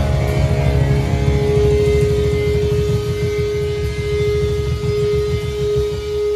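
Punk rock band playing live: one long held electric guitar note rings over fast drumming and bass.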